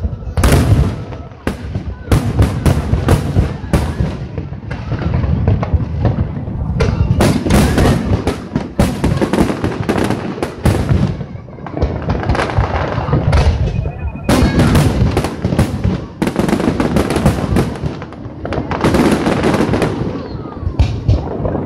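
Aerial fireworks shells bursting in a dense, continuous barrage of loud bangs over a deep rumble.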